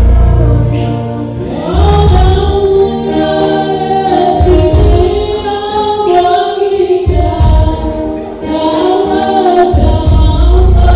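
Gospel worship song: a group of voices singing together through microphones, backed by an electronic keyboard with deep bass notes that come and go in held blocks. The sound is loud throughout.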